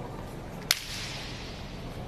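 A single sharp slap of a foot kicking a đá cầu shuttlecock, about a third of the way in, with the echo of the sports hall trailing off after it over steady hall background noise.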